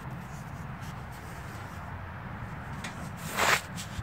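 Ford 351 Windsor V8 idling steadily with a low hum. About three and a half seconds in, a brief rushing noise on the microphone.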